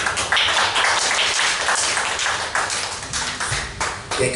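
Applause: many people clapping their hands together, a steady dense patter that stops just before the end.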